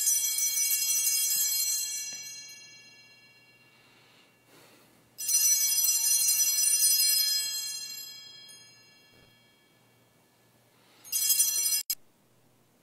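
Altar bells rung three times at the elevation of the consecrated host. Two rings die away over a few seconds each, and a short third ring near the end is cut off suddenly.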